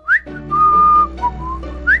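A cartoon police car character whistling a cheerful tune over backing music. It opens with a quick upward slide, holds one long note, then plays a few short lower notes and slides up again near the end.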